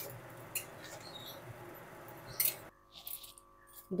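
Flat metal spatula stirring pointed gourd and potato pieces through a milky gravy in a metal kadai: soft scraping, with a couple of sharp clinks against the pan. The sound drops to near silence about two-thirds of the way through.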